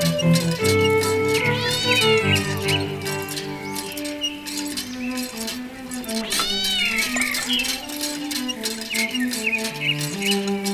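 A cat meowing twice, once about one and a half seconds in and again about six and a half seconds in, each call rising and then falling in pitch, over steady background music.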